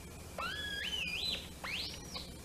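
A syncrometer's electronic oscillator tone from its small speaker: two whistle-like notes whose pitch climbs in steps and glides upward as the probe is pressed on the skin. The rising pitch is what the tester takes as a positive resonance result.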